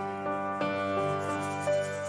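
Slow keyboard music, held notes changing about every half second: the instrumental introduction to a worship song just before the singing begins.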